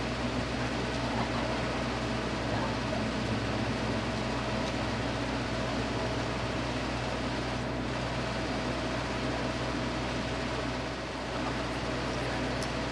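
Steady mechanical hum with a constant mid-pitched tone over a low drone, dipping slightly in loudness near the end.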